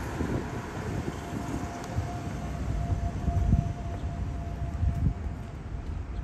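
Outdoor street noise: an uneven low rumble of wind on the microphone. A faint steady high tone comes in about a second in and holds for about four seconds.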